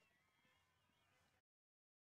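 Near silence: a barely audible residue of the broadcast sound cuts off to dead digital silence about one and a half seconds in.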